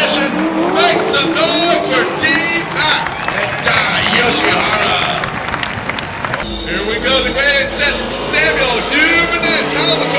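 Drift cars' engines revving hard, the pitch rising and falling over and over, as two cars slide through a corner in tandem, with tyre noise and indistinct voices mixed in.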